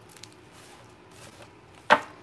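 A few faint handling clicks, then one sharp knock near the end, as of something set down or struck on the table.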